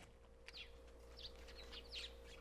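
Faint, scattered chirps of small birds over a low, steady hum.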